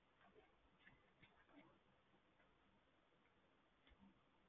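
Near silence: faint room tone with a few soft computer-mouse clicks, several in the first second and a half and one more just before the end.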